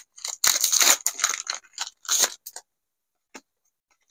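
Foil Pokémon booster pack wrapper being torn open by hand, a run of crinkling and tearing lasting about two and a half seconds, then a single faint click.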